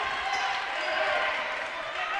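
Basketball gym ambience during play: a small crowd's murmur and faint voices echoing in the hall, with a basketball being dribbled on the hardwood.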